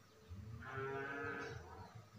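A cat's drawn-out yowl, one call about a second long in the middle, over a faint low hum.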